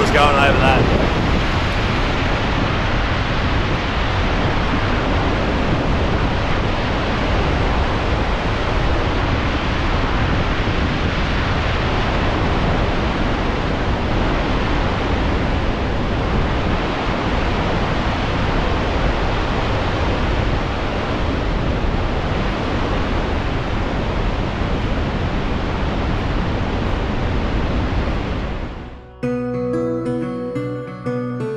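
Steady rush of water pouring over the Dartmouth Dam's stepped rock spillway, the dam full and overflowing with its bottom gates shut. Acoustic guitar music comes in near the end.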